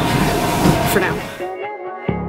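Steady rumbling gym background noise with a faint steady hum and a brief snatch of voice, which cuts off about three-quarters of the way through. Background music with plucked notes takes over.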